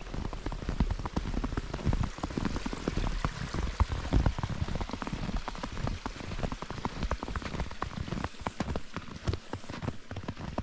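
Boots crunching through fresh powder snow on a walk: a dense, irregular crackle of small crunches over the low thud of each footfall.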